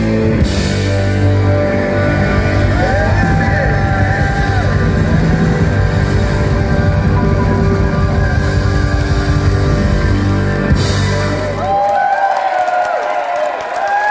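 Live rock band playing at full volume, with guitars and keyboards over drums and bass. About twelve seconds in, the drums and bass drop out, and voices carry on singing held, gliding notes over lighter accompaniment.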